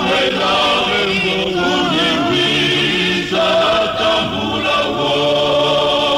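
A male choir singing in harmony, holding long sustained chords, with a brief break a little past the middle before the voices come back in.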